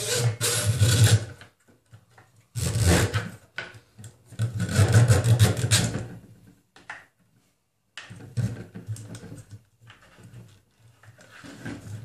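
Rubber toothed timing belt being pulled through a plastic belt holder and dragged along the printer frame, a rasping rub in several bursts of one to two seconds with short pauses between.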